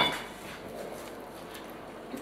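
A single sharp clink of a steel kitchen knife against the cutting board, with a short metallic ring, followed by quiet kitchen room tone.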